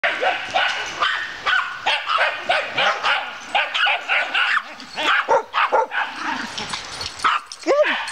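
Dog barking over and over, about two or three barks a second, without a break.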